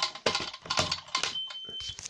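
Clicks and taps of fingers pressing the buttons of a C-tec conventional fire alarm control panel, then one short, steady, high-pitched beep from the panel's internal buzzer about a second and a half in.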